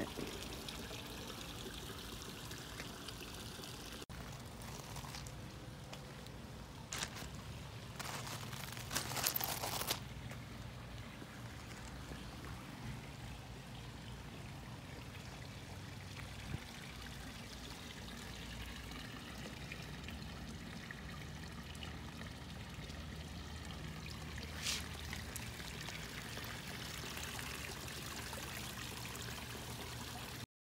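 Steady trickle of running water with a low hum underneath, broken by a few brief louder noises about a third of the way in.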